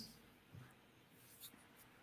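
Near silence: a pause between speakers on a video call, with only a couple of faint soft ticks.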